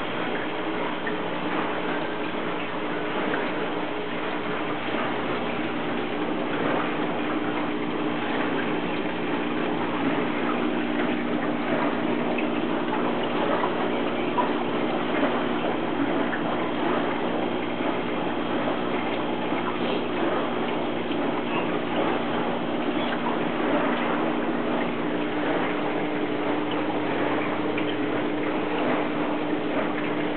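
Aquarium pump and filter equipment running: a steady electric hum under a constant wash of moving water and bubbling.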